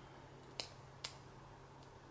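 Two short sharp clicks, about half a second apart, over a faint steady low hum in a quiet room.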